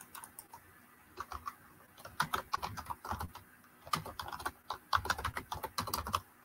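Typing on a computer keyboard: quick runs of keystrokes with short pauses between them, starting about a second in.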